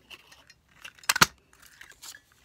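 A handheld lever circle punch clicking shut once, a little over a second in, as it punches a circle out of paper; a few faint clicks of handling come just before and after.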